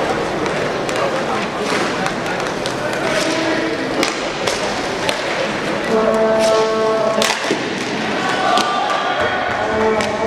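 Indoor inline hockey game: steady crowd noise with sharp clacks and knocks of sticks and puck, and a held note at several pitches sounding from about six seconds in.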